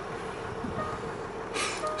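Steady cabin noise of a Land Rover Discovery's 3.0-litre SDV6 diesel idling, with radio music playing faintly. A short noise comes near the end.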